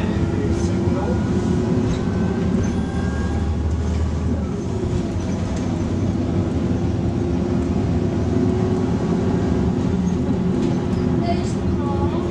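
Volvo B6LE bus's six-cylinder diesel engine running under way, heard from inside the passenger cabin as a steady low drone with road noise. The deepest part of the drone drops away about four and a half seconds in.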